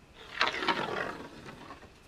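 A pencil dragged across plywood along the edge of a level, marking a cutting line: one scratchy stroke lasting about a second and a half, loudest in its first half, with a few sharp ticks.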